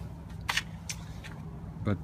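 A few light clicks, the loudest about half a second in, over a low steady hum.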